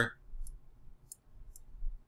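Three faint computer mouse clicks, about half a second apart.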